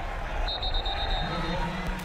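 Stadium crowd noise with a referee's whistle blown once, a steady high note lasting about a second, starting about half a second in, blowing the play dead after the tackle.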